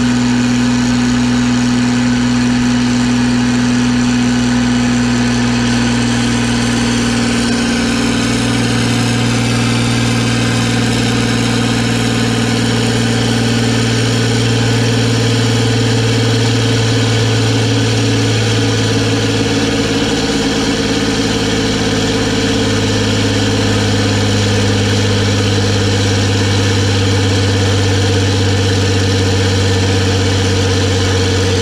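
Diesel engine of an old John Deere tractor running steadily at high speed under a dyno power test, its note slowly sagging in pitch as it is loaded.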